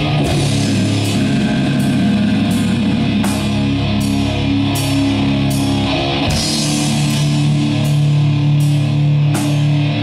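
Doom metal band playing live: heavily distorted electric guitars and bass holding slow, sustained low chords over drums, with cymbal strikes repeating at an even pace. The chords change about six seconds in.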